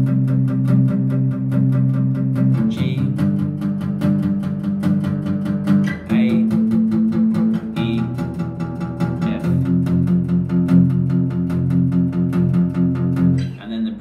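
Maton acoustic guitar strummed in full open chords, quick even strokes with the chord changing about every three seconds: the progression C, G, A minor, F.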